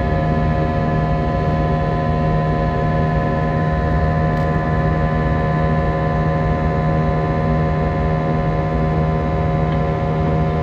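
Airbus A320 cabin noise in the climb: the engines' steady drone and rumble with several held whining tones over it, unchanging throughout.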